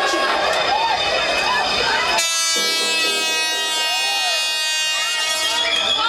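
Club dance music mixed by a DJ, with crowd voices over it. About two seconds in, the bass drops out and one held chord sounds on its own for about three seconds, a breakdown in the mix.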